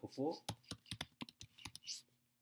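Typing on a computer keyboard: a quick run of keystrokes, about five a second, as a command is entered at a terminal.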